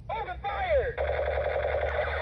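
Battery-powered toy space gun playing its electronic sound effects. A few falling laser-like sweeps are followed, from about a second in, by a continuous, rapidly repeating electronic warble over a low hum.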